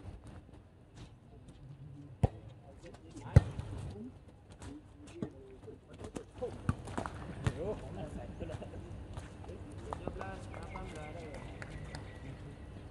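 Volleyball rally: two sharp smacks of the ball being struck, a little over a second apart, the second the loudest, among lighter taps and thuds. Players shout and call to each other through the rally.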